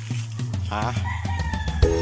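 A rooster crowing once over background music, its call starting under a second in and ending in a long note that falls slightly in pitch.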